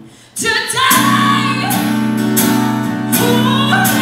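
A woman singing live while strumming an acoustic guitar. After a brief lull, guitar and voice come back in loudly about half a second in and carry on with held chords.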